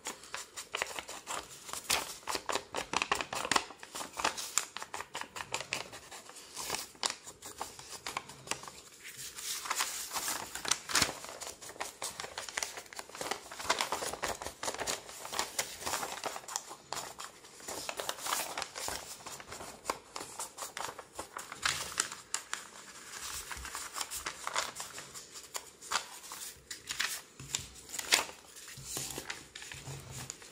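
Foam ink-blending tool scrubbed and dabbed rapidly over the edges of paper sheets, with paper rustling as the sheets are lifted and moved. There are a couple of brief pauses in the strokes.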